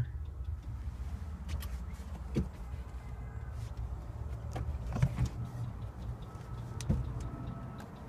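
A few short, sharp knocks and handling bumps over a steady low rumble, from someone moving about in the cab of a skid steer.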